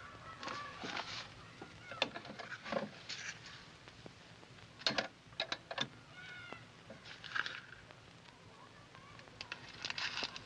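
Scattered sharp clicks and knocks from an old candlestick telephone being handled, with a cluster of four quick clicks around the middle, and a few faint squeaky sounds between them.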